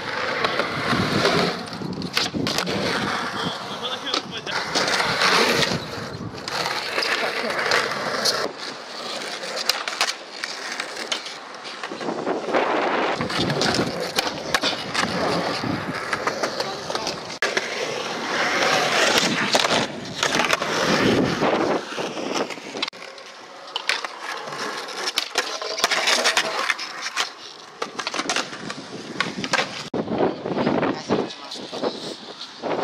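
Skateboard wheels rolling over concrete, broken by repeated sharp clacks and knocks of the board striking the ground.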